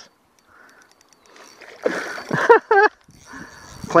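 A man's brief wordless vocal outburst, like a laugh or grunt, about halfway through, between quiet stretches with a few faint ticks and a soft hiss.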